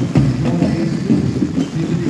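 Street parade music with a heavy beat, mixed with voices; loud beats land near the start and at the end.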